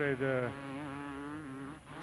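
Two-stroke 250 cc motocross bike engines buzzing at a steady pitch that wavers slightly. A man's commentary ends in the first half second.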